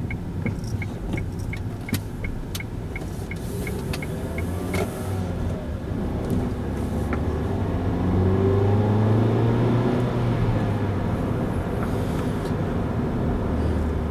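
Inside a car: the turn-signal indicator ticks about three times a second as the car turns at a junction, then stops about five seconds in. The engine hum continues underneath and rises in pitch as the car picks up speed.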